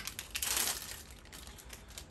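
Crinkling and tearing of a syringe's paper-and-plastic sterile wrapper being peeled open, loudest in the first second and then fading.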